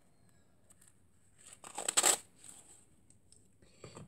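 A brief rustling burst of packaging being handled, about two seconds in, with a few faint ticks after it.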